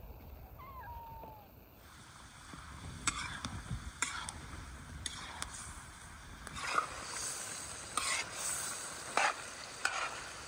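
A cat gives one short meow about half a second in. Then chunks of lamb sizzle in a large kazan over a wood fire while a long metal spoon stirs them, scraping and knocking against the pan about once a second.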